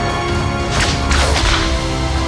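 Trailer score with sustained held notes, cut through by two quick swishing whooshes in close succession about a second in.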